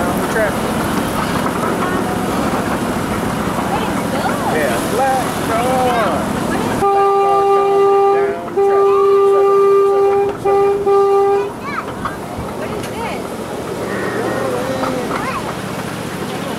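Ride-on park train's horn sounding a single steady note in a long, long, short, long pattern, the grade-crossing signal, starting about seven seconds in. Before and after it, people's voices and the train's running noise.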